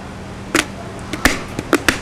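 A few sharp hand claps at uneven intervals, the first about half a second in and three close together near the end, over a steady low hum.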